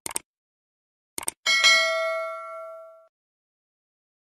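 Subscribe-button animation sound effect: a few short clicks, then a bright notification-bell ding that rings and fades over about a second and a half.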